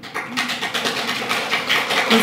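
A small audience laughing together, with many quick, sharp sounds running through the laughter. It starts suddenly at the beginning and carries on steadily.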